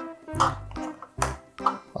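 Background music with plucked, guitar-like notes, with a few light clicks of plastic parts being handled.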